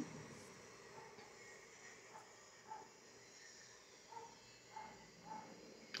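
Very faint sizzling of diced tomato, onion and green pepper sautéing in a nonstick frying pan, with a few soft scrapes as a silicone spatula stirs them.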